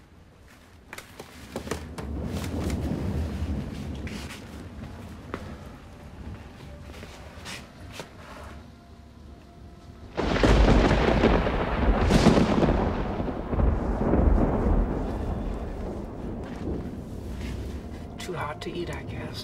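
Thunder: a low rumble builds a second or two in and eases off, then a sudden loud thunderclap breaks about ten seconds in and rolls on as it slowly dies away.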